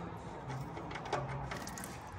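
Faint metallic clicks and taps of an oil drain plug being unscrewed by hand beneath a Land Rover Series 1, a few of them about a second in, just before the oil starts to run out.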